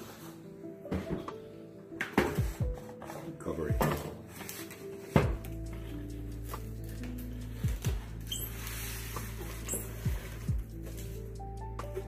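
Background music over kitchen clatter: several sharp knocks and clicks of kitchenware being handled in the first five seconds. A low steady hum comes in about five seconds in.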